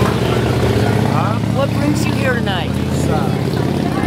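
Indistinct voices talking over a steady low engine hum.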